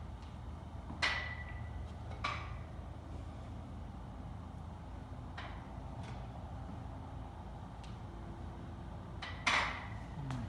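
A few sharp, irregular clinks from a loaded barbell and its plates shifting during standing calf raises, one ringing briefly and the loudest near the end, over a steady low hum.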